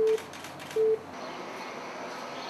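Telephone line tone: short, single-pitch beeps repeated just under once a second, two of them, then a steady background hiss.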